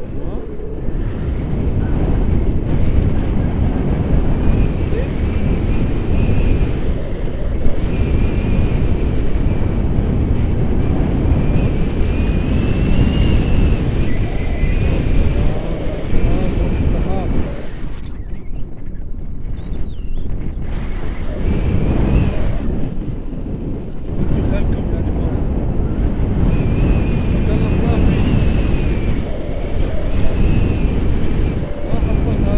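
Wind buffeting the camera's microphone during a tandem paraglider flight: a heavy, steady rumble that eases briefly about two-thirds of the way through.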